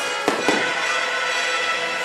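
Two sharp firework bursts in quick succession just after the start, over a music soundtrack that plays steadily throughout.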